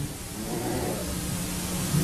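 Steady background hiss with a faint low hum underneath.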